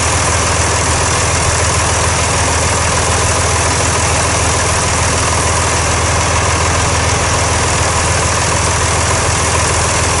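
John Deere 3350 tractor's six-cylinder diesel engine running steadily at a constant speed, close up, warming up to temperature so its cooling hoses and joints can be checked for leaks.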